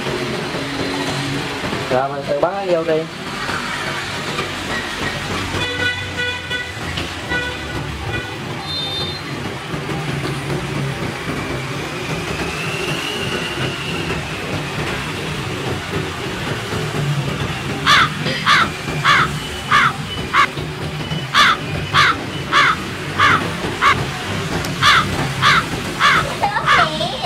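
Crow caws, a comedic sound effect, repeated rapidly at about two a second from about two-thirds of the way in, over a steady low hum.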